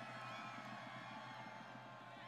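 Faint crowd cheering from many voices at once, over a steady low hum.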